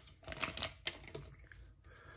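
Foil trading-card pack wrapper crinkling and a stack of cards clicking as they are handled. There are a handful of short sharp clicks in the first second, then it goes quieter.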